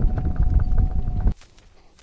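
Golf cart driving away: a low rumble with a steady whine and faint regular ticking, which cuts off suddenly about a second in.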